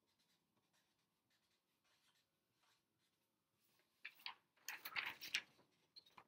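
Faint felt-tip marker strokes on paper, then louder crackling of the paper sheet being lifted and handled from about four seconds in.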